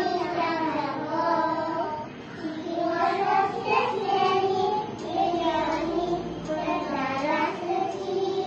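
Young children singing a song together, the melody moving in short phrases.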